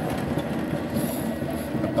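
Steady road and wind rumble from a Yadea electric scooter being ridden at about 20 km/h.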